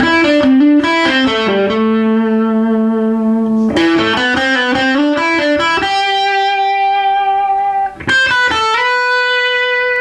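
Electric guitar playing short phrases of single notes from the A minor scale, each phrase ending on a long held note with vibrato. There are three phrases, with a brief gap about eight seconds in.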